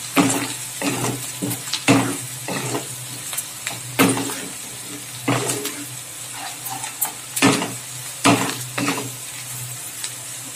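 Diced onion sizzling in hot oil in a non-stick kadai while a wooden spatula stirs it, scraping and tapping against the pan every second or so. The onion is being fried toward light brown.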